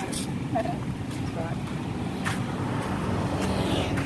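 Steady hum of road traffic, with a few faint voice fragments and light clicks over it.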